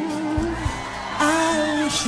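A soul-pop song: a woman's voice holds and bends long wordless sung notes over the band, with a brighter burst of sound just over a second in.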